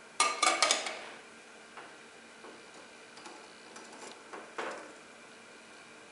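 Small lab vessels being handled: a quick rapid cluster of clicks and clinks just after the start, the loudest thing here, then a few scattered light taps.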